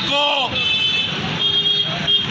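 Street traffic noise, with a steady high tone sounding twice for just under a second each; a man's spoken word opens it.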